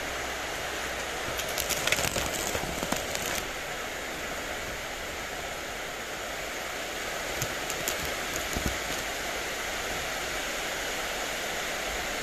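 Steady hiss with two short spells of rustling and light clicking, about a second in and again near eight seconds, as strawberry plants are handled and fruit picked by hand.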